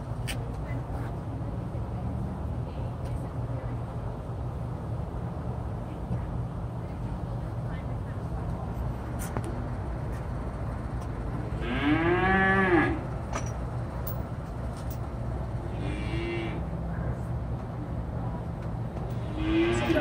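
Cattle mooing: one long moo about twelve seconds in, its pitch rising then falling, and two shorter, fainter moos later on, over a steady low hum.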